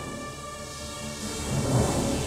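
Dramatic background music with sustained tones, then a rumbling swell that builds over the second half and grows loudest near the end.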